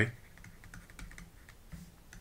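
Faint, irregular ticks and light scratches of a stylus writing on a tablet screen.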